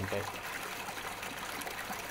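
Pumped water gushing from the end of a PVC discharge pipe into a water-filled tank, a steady splashing pour.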